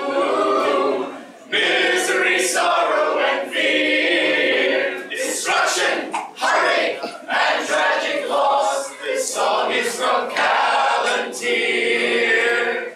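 A small group of voices singing unaccompanied in harmony, in phrases separated by short breaths.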